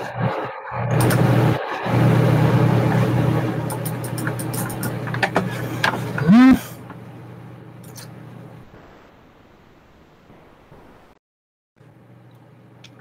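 Loud buzzing hum and noise through an over-amplified microphone on a voice call, with a voice barely made out under it. A short sharp squeal rises and falls about six seconds in, then the noise fades to a faint hiss.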